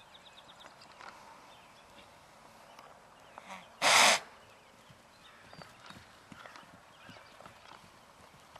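A young horse close by gives one loud, short snort about four seconds in, over faint scattered hoof sounds on turf.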